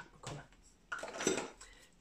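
Empty aerosol deodorant can being put down among other empty packaging: a light knock, then a louder clattering rattle about a second in.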